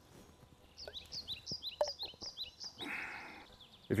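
A small bird singing a quick series of short, high chirps that each slide down in pitch, starting about a second in and lasting about two seconds. A brief soft rustle follows near the end.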